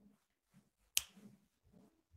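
A single sharp click about a second in, over faint low background sounds.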